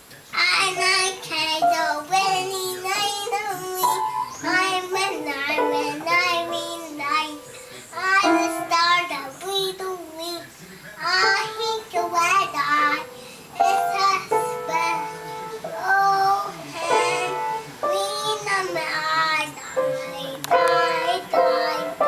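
A young girl singing in short phrases with a wavering pitch while she plays an upright spinet piano.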